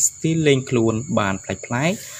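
A voice speaking in quick phrases, with a steady high-pitched whine running underneath.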